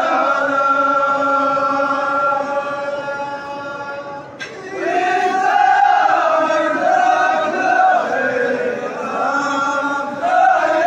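Men's folk troupe chanting together in Houara style. A long held note fades, a sharp click comes about four seconds in, then the chant returns on a line that rises and falls.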